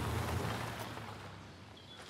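Low, steady engine rumble of a side-by-side utility vehicle arriving, fading away over about a second and a half.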